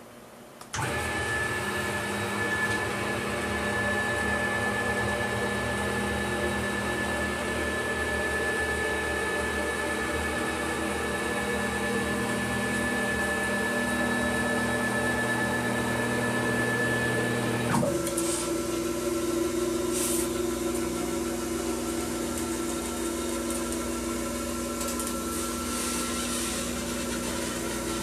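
Stepper motors driving the ball screws of a CNC-converted PM-940M mill as the axes move back to zero: a steady multi-tone motor whine. About 18 s in the tones change abruptly as one axis move ends and another begins.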